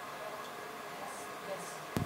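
Quiet hall room tone, a steady low hiss with faint murmuring, then a single sharp click just before the end.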